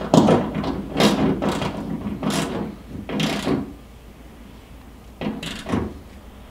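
Hand ratchet worked in short strokes, each stroke a quick rasp of clicks, as bolts are tightened down by hand rather than with a power tool. About six strokes in the first three and a half seconds, then a pause and two more near the end.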